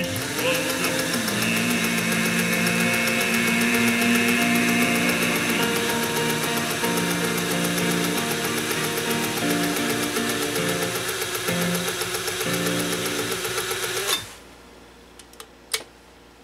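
A slow, sad German song sung by a man, which cuts off abruptly about two seconds before the end, followed by a couple of faint clicks.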